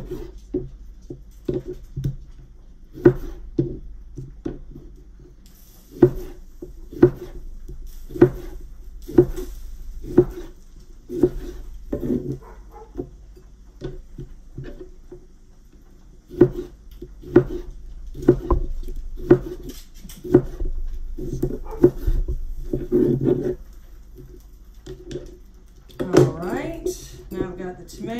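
Knife slicing a tomato on a wooden cutting board: a run of sharp knocks of the blade striking the board, roughly one or two a second, with pauses between runs.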